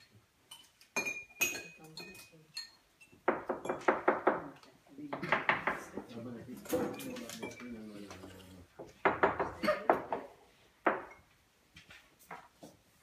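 Spoons clinking against porcelain cupping cups: a scatter of short clinks, a few with a brief high ring, mixed with people talking around the table.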